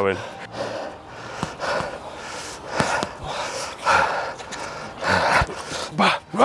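Men breathing hard and panting, in repeated breathy gusts after a sword bout, with a few light knocks.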